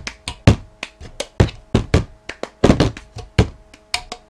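Cup-song rhythm: hands clapping and a cup being tapped, lifted and knocked down on a tabletop in a quick, repeating pattern of sharp knocks and thuds.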